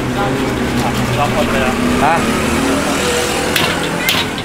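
Dough sticks deep-frying in a wok of hot oil, sizzling, with a sharp metal knock near the end as the wire strainer of fried dough is tipped onto the draining rack. Voices and a motor vehicle engine running in the street.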